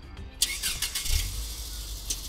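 A car engine starting and running, coming in suddenly about half a second in, with a low rumble underneath.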